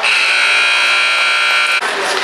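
Ice arena buzzer sounding one steady, loud electronic tone for nearly two seconds, cutting off abruptly near the end.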